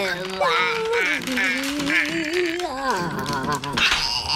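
A wordless, cartoonish voice wailing with a wobbling pitch, ending in a few rising and falling slides.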